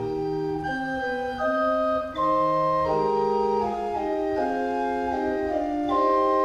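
Church organ playing a hymn in calm, sustained chords, several held notes moving together from chord to chord, with a brief dip in loudness about two seconds in.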